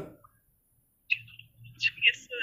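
Two short, high chirps after a second of silence, one about a second in and a sharper one near the end.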